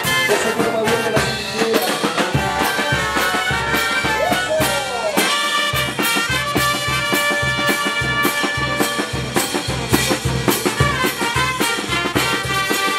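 Andean brass band playing dance music: trumpets and trombones over bass drum and percussion. The drum beat comes in a couple of seconds in and drops out briefly near the middle.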